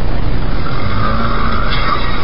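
Loud, steady road traffic noise. About half a second in, a higher, harsher noise rises over it.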